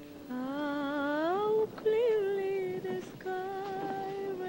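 Film score: a lone wordless voice humming a slow melody. It slides upward near the start, then holds long, slightly wavering notes with two short breaks.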